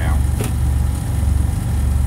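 Semi truck's diesel engine idling, heard inside the cab as a steady low rumble, with one short click about half a second in.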